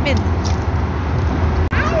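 A steady low rumble, like traffic or an engine running, with a young child's brief high-pitched vocal sounds at the start. It drops out abruptly for an instant near the end.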